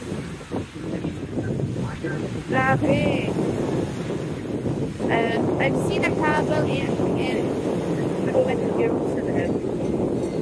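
Wind blowing across the microphone in a steady low rush, with indistinct voices calling out now and then, most of them in the second half.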